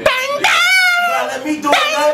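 A high-pitched, wordless wailing voice: a short cry, then a long wavering one whose pitch slides down, and a third beginning about 1.8 seconds in.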